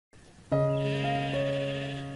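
A sheep bleating over plucked-string background music that comes in about half a second in.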